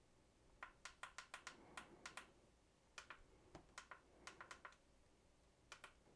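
Faint, sharp clicks of an alarm clock's small buttons being pressed repeatedly with a finger, in quick runs of several presses with short pauses between, as the date digits are stepped up.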